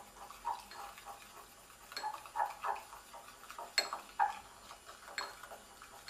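Stirring stick tapping and scraping against a small glass bowl as water is mixed into a wet glue and magnetic primer mixture: a few faint, scattered clicks with soft wet stirring sounds between them.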